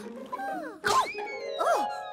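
Cartoon soundtrack: background music with wordless, sliding-pitch vocal squeals from the characters and a short whoosh-like noise burst just under a second in.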